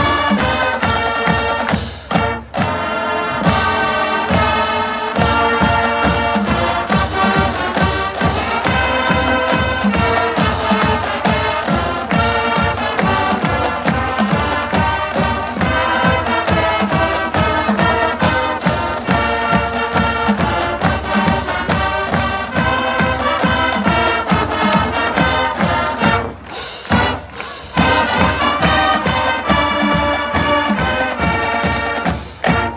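High-school marching band playing the school song: brass section over a drumline, with a steady bass-drum beat. The music breaks off briefly about two seconds in and again near the end.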